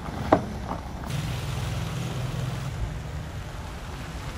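A single sharp click, then from about a second in a Chevrolet SUV's engine running with a steady low hum.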